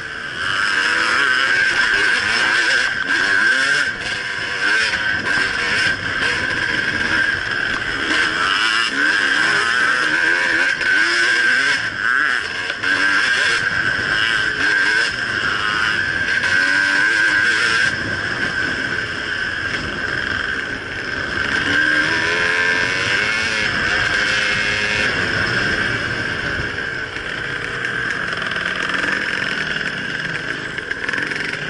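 Two-stroke dirt bike engine heard from on board the bike, its revs rising and falling continually as it rides a twisting trail, easing somewhat in the second half.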